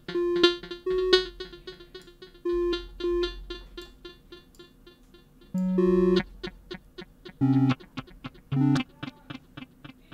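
Synthesizer notes from a Bitwig Grid patch played through a delay: short notes followed by pretty loud, fading echoes, a few notes held about half a second, and several lower-pitched notes in the last few seconds.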